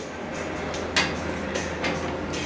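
Metal workbench parts rattling and scraping as they are handled, with a sharp knock about a second in and another near the end, over a steady low hum.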